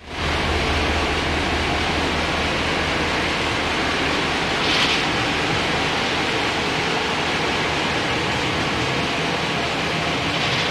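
GMC truck engine running steadily: a deep, even rumble under a loud, steady noise, with one brief swell of higher-pitched noise near the middle.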